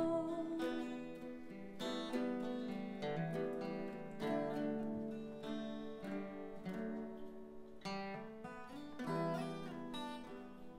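Acoustic guitar playing an instrumental passage of a folk lullaby, plucked notes and chords ringing on one after another.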